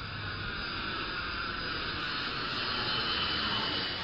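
Jet airliner passing low overhead with its landing gear down on approach: a hissing jet engine noise that slowly swells, with a whine that falls in pitch as it goes by.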